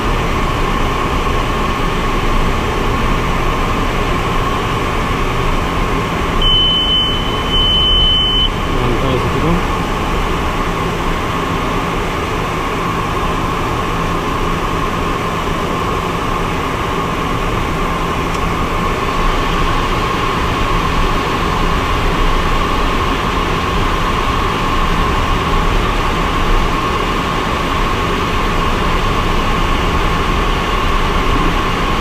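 Steady in-flight cabin noise of a small aircraft: a constant drone of engine and airflow. Two short high beeps come one right after the other about a quarter of the way in.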